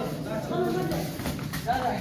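People talking, with a few short knocks partway through.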